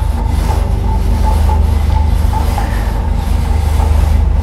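Steady low hum of the cruise boat's engine, heard from inside the cabin, while a striped roller blind is pulled up.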